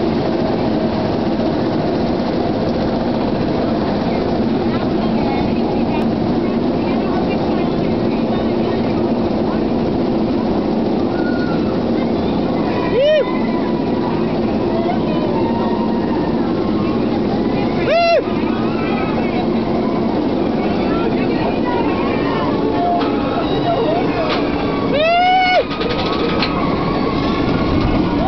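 Steady rumble of an inverted roller coaster ride, with riders yelling in rising-and-falling screams about 13 and 18 seconds in and several together near the end.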